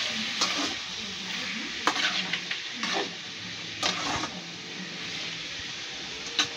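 Grated carrot and onion sizzling in a metal pan while a metal spatula stirs them, scraping and knocking against the pan about once a second.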